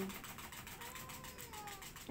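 A domestic cat giving one faint, drawn-out meow that rises slightly and then slides down as it fades.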